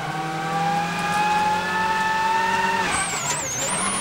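A Ford Focus RS WRC rally car's turbocharged four-cylinder engine at full throttle, heard inside the cabin. Its pitch climbs steadily as it pulls through one gear, then drops sharply about three seconds in as a high, wavering whistle comes in.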